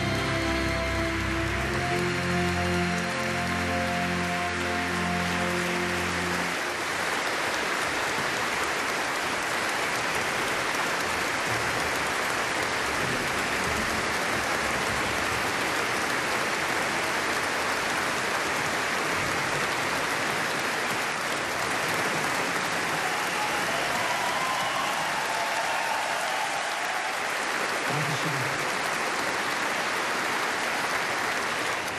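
Large concert-hall audience applauding steadily. For the first six seconds or so, a symphony orchestra holds sustained chords under the clapping, then stops, leaving the applause alone.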